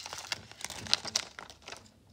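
Crinkling of Pokémon card packaging being handled, a quick run of small crackles that thins out near the end.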